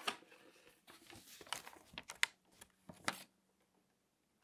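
Glossy magazine pages being handled and shuffled by hand, rustling and crinkling in uneven bursts, with a few sharp snaps of paper around two and three seconds in.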